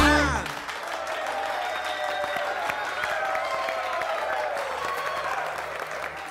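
A song ends on a final sung 'edan!' in the first half second, then an audience applauds steadily, with voices calling out over the clapping.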